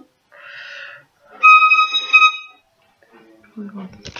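Violin sounding a single high note, held steady for about a second, after a short soft scratchy noise from the bow.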